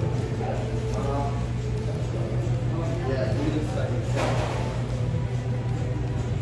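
Restaurant background sound: indistinct voices over a steady low hum, with a short rush of noise about four seconds in.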